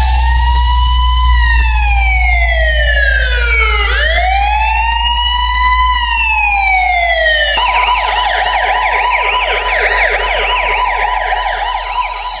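Siren sound effect from a DJ speaker-test track over a deep, steady sub-bass tone. It gives two slow wails, each rising and then falling, and about seven and a half seconds in it switches to a fast warbling yelp. The bass and siren cut out near the end.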